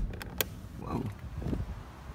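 Two sharp clicks about half a second apart as the trunk release button of a 2006 Volkswagen Jetta is pressed and the trunk latch lets go, followed by faint handling noise.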